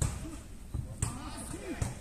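A few short thuds of a football being kicked and bouncing during play: one at the start, one about a second in and another near the end, with faint shouts of players in the background.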